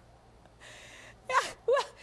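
A woman's audible intake of breath, about half a second long, followed by a couple of short spoken sounds.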